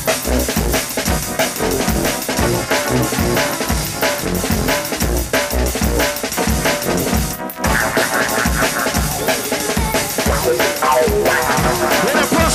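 Jungle drum and bass in a DJ mix: fast, busy breakbeat drums over heavy deep bass. The music drops out for a moment about seven and a half seconds in, then comes back with a higher melodic layer over the beat.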